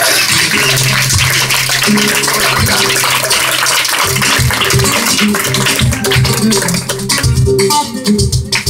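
Live flamenco music: a Spanish guitar playing under a dense, fast run of handclaps (palmas) and other percussion, with a short dip near the end.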